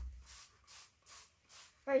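Trigger spray bottle of cleaner squirted onto a door: a few short hissing sprays, about two a second.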